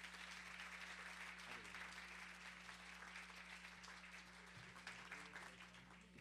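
Audience applauding, faint, with the clapping tapering off toward the end.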